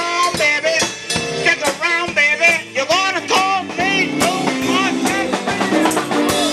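Band music: a voice singing over guitar, with a drum kit keeping a steady beat.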